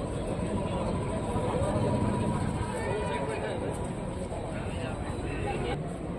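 Shouting and chatter of footballers and spectators carrying across an open pitch, over a steady background rumble.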